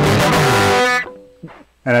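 Overdriven electric guitar holding a loud chord, which is cut off about a second in and dies away to near silence. A man's voice comes in at the very end.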